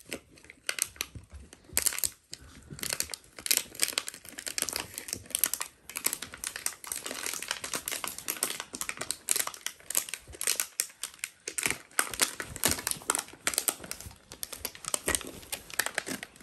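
Dalmatian puppies chewing and worrying a plastic bottle: a constant, irregular crinkling and crackling of thin plastic.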